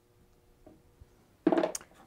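Near silence with a couple of faint soft taps from a rubber stamp being pressed into and lifted off a leather-hard clay bowl's base; a woman's voice starts speaking near the end.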